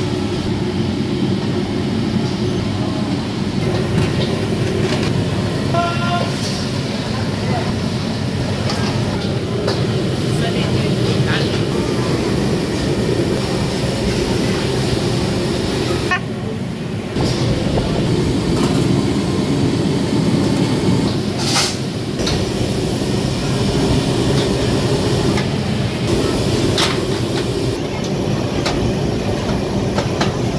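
Busy restaurant kitchen noise: a steady mechanical rumble from the exhaust hood and gas-fired steamers, with steel plates and ladles clinking now and then and voices in the background.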